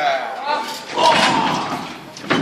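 Shouting voices in a large hall, with sudden thuds from bodies hitting the wrestling ring about half a second and a second in.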